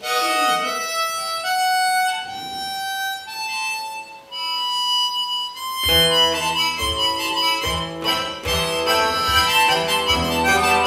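Harmonica playing long held notes on its own. About six seconds in, a strummed acoustic guitar comes in under it, and harmonica chords carry on over the strumming.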